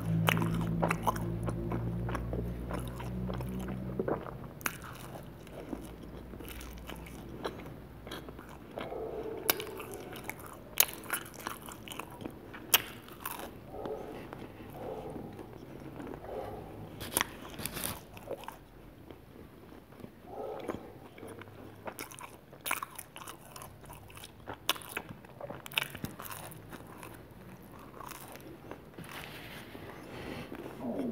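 Close-miked biting and chewing of cheese pizza with a crisp, browned crust: repeated crunches and wet mouth clicks. A low steady hum sounds under it for the first four seconds, then stops.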